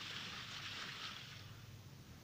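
Churning, splashing seawater as divers jump from the side of a boat into the sea, fading away over the second half, with a steady low hum beneath. Heard through a television's speaker.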